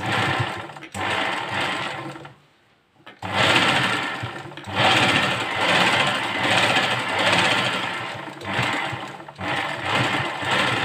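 Black domestic sewing machine stitching a blouse neckline: a run of stitching, a short stop about two and a half seconds in, then steady stitching for the rest with a few brief dips.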